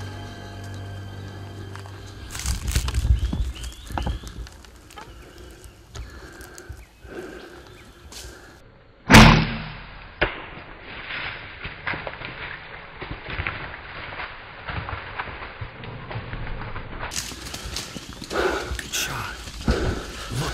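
One loud, sudden thump about nine seconds in: a compound bow shot, the arrow striking a buffalo bull. Quieter rustles and knocks come before and after it.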